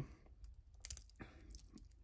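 A few faint clicks and light metal rattles from the Islander ISL-03's stainless steel bracelet and its folding clasp as they are handled.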